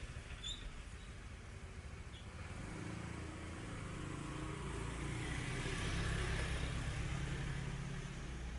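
Faint low rumble that swells around the middle and eases off near the end.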